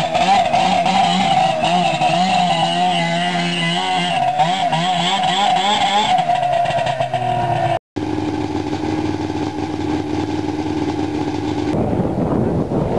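Two-stroke snowmobile engine running and being revved, its pitch wavering up and down, as the sled is ridden up a ramp onto a trailer. After a sudden break about eight seconds in, a steady engine drone holds one pitch.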